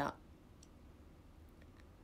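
A woman's voice trails off at the very start, then quiet room tone with a few faint, short clicks: one about half a second in and a quick few near the end.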